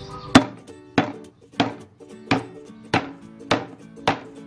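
A cleaver chopping through a bundle of lemongrass stalks on a wooden chopping block: six evenly paced chops, about one every 0.6 seconds, the first the loudest.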